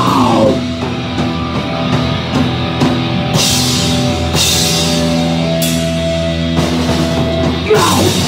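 Live punk rock band playing loud: distorted electric guitars hold long, ringing chords over drums, with cymbal crashes coming in several times in the second half and no singing.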